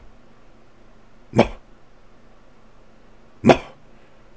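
A man imitating a dog's 'muffle puff', the soft, muffled half-bark a dog gives at the fence line to stir up the other dogs. It is voiced as two short 'muh' sounds about two seconds apart.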